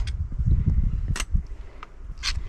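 Wind buffeting the microphone in a low, swelling rumble, with two or three sharp clicks of hiking steps on the rocky path in the second half.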